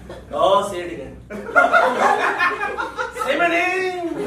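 A man's voice making drawn-out vocal sounds that have no clear words, mixed with chuckling and laughter from a live audience.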